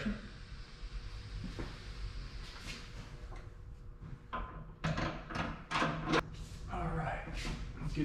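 Metal clunks and knocks as a coilover strut is worked up into a Fox Body Mustang's front strut tower: a stretch of faint handling, then a cluster of sharp knocks about four to six seconds in.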